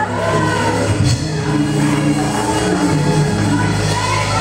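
Church music: sustained low keyboard chords held under voices from the congregation calling out.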